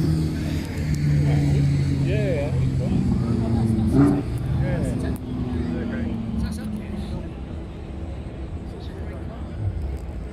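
Cars driving past on a hillclimb course, their engines making a steady drone that fades in the second half, with people talking nearby.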